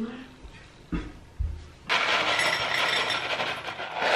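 Muesli poured from a cardboard box into a ceramic bowl: a steady rattling hiss of flakes and dried fruit falling, starting about two seconds in. It follows a couple of dull knocks.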